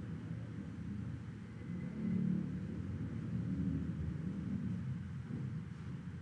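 A steady low rumble of background noise, swelling a little about two seconds in.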